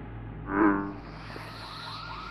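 Synthesizer music over a low steady drone: a short loud pitched tone about half a second in, then a quick repeating warble of rising-and-falling chirps, about four a second.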